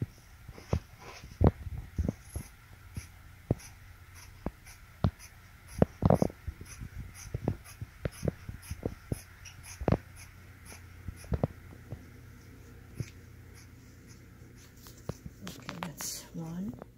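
Scissors cutting through heavy fabric: irregular snips and clicks of the blades closing, with the rustle of the cloth being handled, over a low steady hum.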